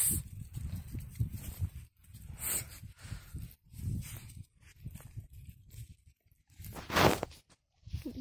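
Footsteps and paws crunching and rustling on a thin layer of snow over grass. There are a few short breathy bursts, the loudest near the end.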